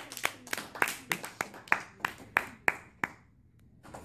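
Small classroom audience applauding, led by sharp, evenly paced hand claps close by, about three to four a second, that stop about three seconds in.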